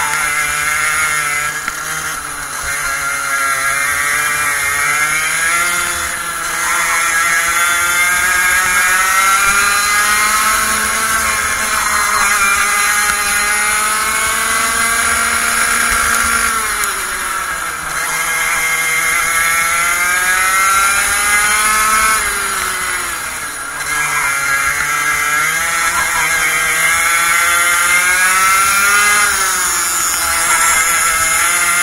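Racing kart engine heard from onboard, running at high revs: the pitch climbs steadily along each straight, then drops sharply when the throttle is lifted for a corner, five or six times.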